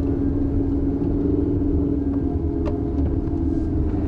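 Steady low rumble of a car driving, heard from inside the cabin. A held low tone fades out about halfway through.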